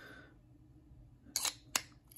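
A tiny keychain knife snapped back into its Kydex sheath: two sharp plastic clicks about a second and a half in as the blade seats and the sheath's retention catches.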